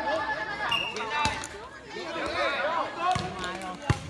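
Light air volleyball struck by hands: a sharp slap about a second in and a louder one just before the end as a player passes the ball up. People are talking over it.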